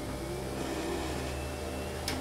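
Abaxis veterinary hematology analyzer running a full blood count on a blood sample: a steady low motor hum that sets in at once, with a faint high whine above it.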